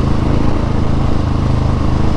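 Husqvarna 701 Supermoto's single-cylinder engine running steadily at low road speed while the bike is ridden, heard from the rider's helmet.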